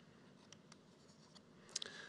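Near silence: faint room tone with a few soft clicks, a cluster of them near the end.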